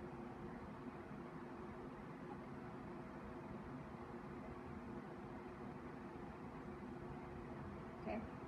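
Faint steady background hum and hiss: room tone, with no clear bowed notes or other events standing out.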